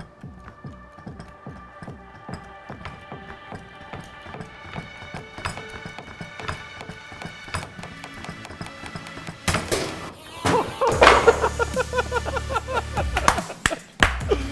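Background music, then about nine and a half seconds in a sudden loud burst as a SharkBite push-to-connect fitting blows off its PEX pipe under hydraulic hand-pump pressure, followed by laughter and shouts.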